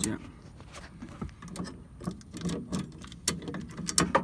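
Scattered sharp metallic clicks and clacks from a Kobalt ratcheting adjustable wrench as its jaws are ratcheted closed onto a spring compressor's nut.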